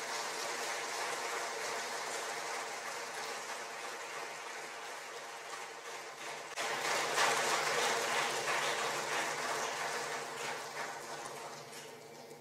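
Audience applauding in a concert hall after a piece ends, the clapping surging again just past halfway and dying away near the end.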